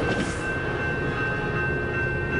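Caltrain commuter train passing close by: a steady rushing rumble of the cars on the rails, with a thin high tone held over it.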